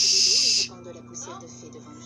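A person's loud "shhh", a hushing hiss lasting about half a second at the start, then faint background voice and music over a low steady hum.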